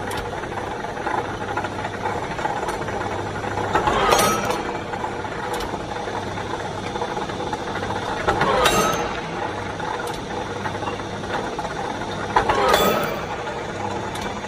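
Small electric rebar cutting machine running with a steady motor and gear hum, cutting rebar three times, roughly every four and a half seconds. Each cut is a sharp metallic clack with a brief ring, the loudest thing heard.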